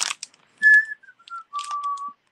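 A person whistling in admiration: a short high note, a few quick falling notes, then a lower note held near the end.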